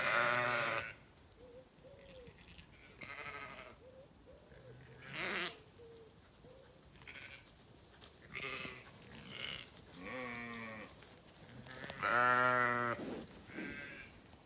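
Zwartbles ewes bleating, a series of about eight separate calls from the approaching flock, the loudest and longest about twelve seconds in.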